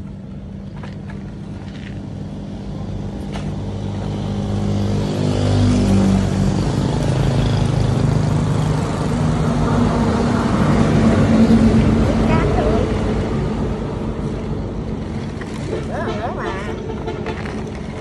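A motor vehicle passing by: a steady engine hum that grows louder over the first several seconds, stays loud through the middle, and fades toward the end.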